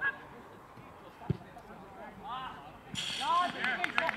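A football kicked once, a single dull thud about a second in, amid players' distant shouts on the pitch; the calling gets louder near the end.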